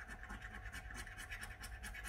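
A coin's edge scratching the scratch-off coating from a paper scratch card in rapid, repeated short strokes, faint and raspy.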